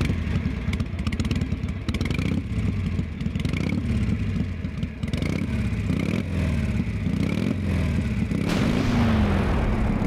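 Motorcycle engines running and being revved, their pitch rising and falling. The sound grows fuller and louder about eight and a half seconds in.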